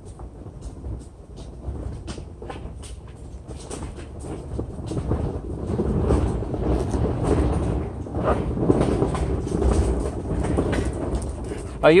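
A car rolling slowly along an asphalt driveway: a low rumble of tyres and engine with small ticks and crackles from the surface, growing louder from about the middle.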